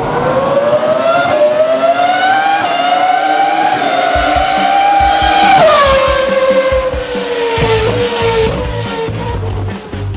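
A race car engine sound effect accelerating. Its pitch climbs for about five and a half seconds, then drops sharply and slowly falls away. Music with a steady beat comes in underneath about four seconds in.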